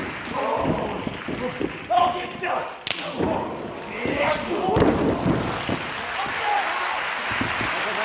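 Pro-wrestling strikes: kicks and hand chops landing on bare skin with sharp smacks, several in the first few seconds, then a heavier thud about five seconds in as a body goes down on the ring mat. Wrestlers' shouts and grunts come between the blows.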